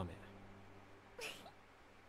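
Quiet room tone with a steady low electrical hum, and one brief faint voice sound about a second in.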